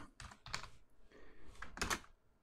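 Computer keyboard typing: a handful of separate, quiet keystrokes spread unevenly, with short gaps between them.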